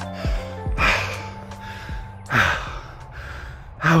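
A man breathing hard after a three-minute all-out running effort, with three heavy gasping breaths over soft background music.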